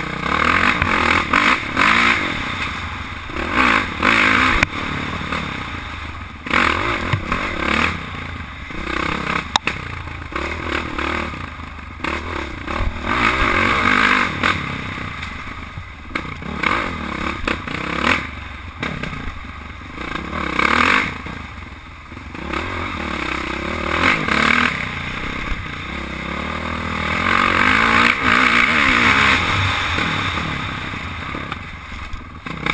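Honda CRF450 single-cylinder four-stroke dirt bike engine under way, revving up hard and easing off every few seconds as it is ridden along a rough dirt trail, heard from the rider's helmet camera.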